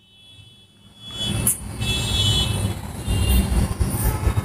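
Low rumbling background noise that comes up about a second in and carries on unevenly.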